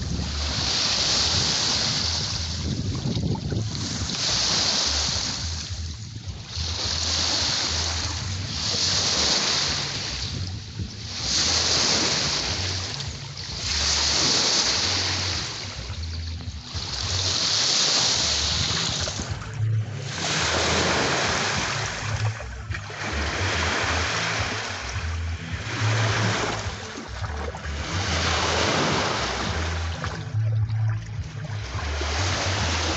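Small lake waves washing and breaking on the shore, each surge swelling and falling back every two seconds or so. Wind buffets the microphone with a low rumble.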